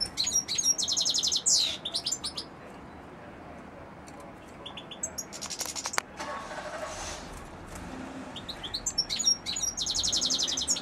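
European goldfinch singing: high twittering phrases with fast buzzy trills, coming in bursts in the first couple of seconds, around five seconds in, and again near the end, with short pauses between.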